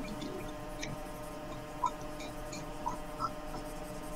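Faint, scattered light clicks and soft scratching from hand input during digital painting, over a steady low electrical hum.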